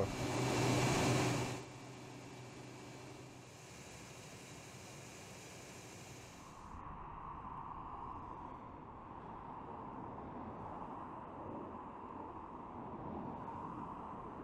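Road traffic heard at a distance as a steady hum, after a louder rush of noise in the first second and a half.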